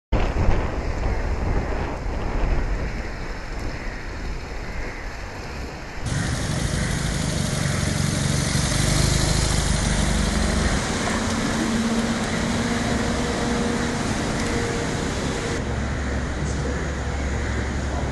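Car engines and tyre noise as vehicles drive past and pull up, a steady rumble that changes abruptly about six seconds in and again near sixteen seconds.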